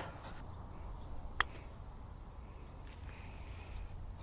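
A single sharp click about a second and a half in: a putter striking a golf ball for an uphill putt from off the green. Under it is a faint, steady, high insect chirr.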